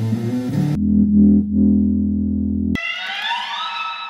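Electric bass notes set ringing by a neodymium magnet pick held just off the strings, one low note held for about two seconds. Near three seconds it changes abruptly to electric guitar notes played the same way, several of them bending upward in pitch.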